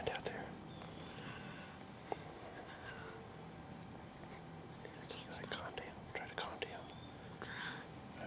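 Hushed whispering between hunters, breathy and unvoiced, coming in short bursts, with more of it in the second half. A single faint click about two seconds in.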